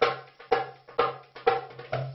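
Darbuka (metal goblet drum) played by hand in a steady rhythm: sharp ringing strokes about twice a second, with lighter finger taps between them.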